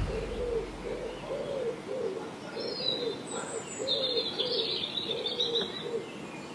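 Birds calling outdoors: a low call repeated about twice a second, joined in the middle by higher chirps and a trill from a second bird.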